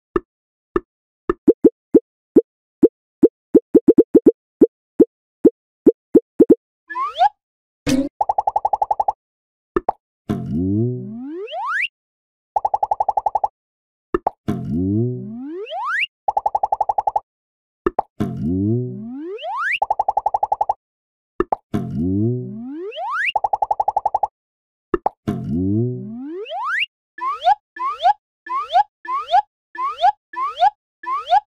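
Cartoon sound effects: a run of quick plops that speed up, then a short buzz followed by a long rising glide, repeated about five times, ending in a rapid string of short rising boings.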